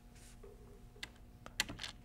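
A few faint computer keyboard key clicks: one about a second in, then several in quick succession near the end.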